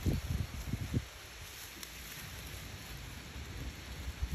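Low, irregular rumbling thumps on the microphone for about the first second, of the kind wind gusts or handling make, then a steady faint outdoor hiss.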